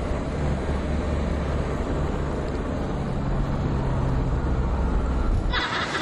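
Car driving on a highway, heard from inside: a steady low road and engine rumble with a held low hum. About five and a half seconds in it cuts off and a hissier outdoor background takes over.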